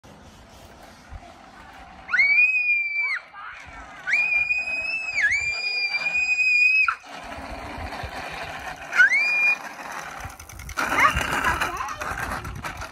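A young child screaming in long, high-pitched squeals: a held scream of about a second, then one of about three seconds, then a short one near the end.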